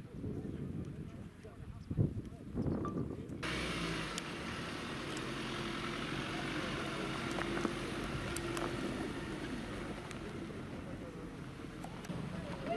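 Muffled murmur of a gathered crowd, then from about three seconds in a van's engine running steadily as it drives slowly along a dirt track, under a steady outdoor noise with a few scattered clicks.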